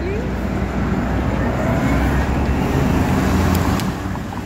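City street traffic, with a passing vehicle's low rumble that swells to a peak about three seconds in and eases off near the end.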